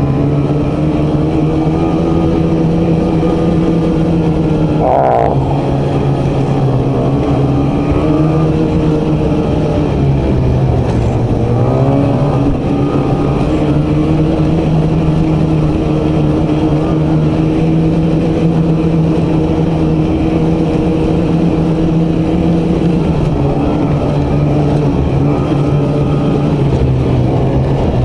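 Ski-Doo E-TEC two-stroke snowmobile engine running at a steady trail cruise. The revs sag and pick back up three times: about five seconds in, around ten to twelve seconds in, and near twenty-three seconds in.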